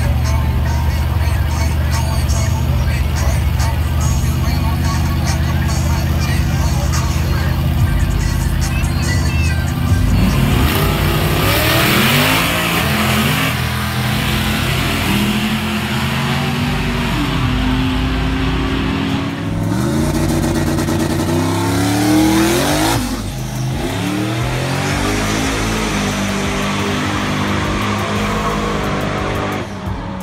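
Big-rim donk drag cars at the line, then from about ten seconds in two of them launch and accelerate down the strip, engine pitch climbing and dropping back through repeated gear shifts. Crowd voices and music run underneath.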